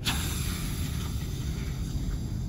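Air hissing out of a balloon car's straw nozzle as it drives the car along. The hiss starts suddenly and slowly fades, over a low rumble.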